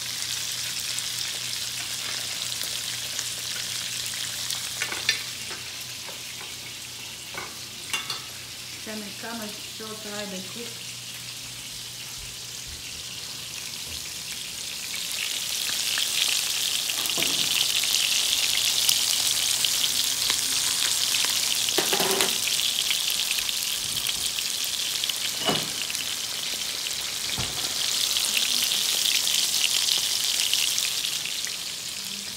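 Shrimp meatballs sizzling as they fry in oil in a stainless steel skillet, a steady high hiss that grows louder about halfway through. A few sharp clicks of a spatula against the pan.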